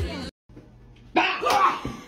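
A person's sudden, short vocal outburst, loud and sharp, starting about a second in after a brief dead-silent gap.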